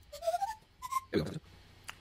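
Software synth flute patch (Omnisphere 'Raspy Air Pseudo-Flute') playing a quick rising run of about six short, pure, whistle-like notes, followed a little after a second in by a short breathy sound.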